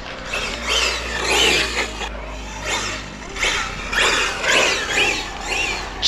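Castle 1515 2200kv sensored brushless motor in an RC buggy on 6S, whining up and down in pitch in repeated bursts as the car is punched and let off, six or seven times.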